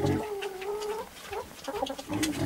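A hen giving one drawn-out call of about a second, gently rising then falling, followed by two short clucks.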